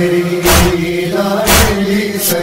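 Noha recording between sung lines: a chorus of male voices holding a low chanted drone, with a heavy thump about once a second marking the lament's beat.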